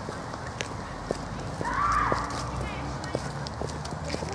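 Footsteps and scattered sharp clicks on a park path, with one short raised voice call about halfway through that rises then falls in pitch and is the loudest sound.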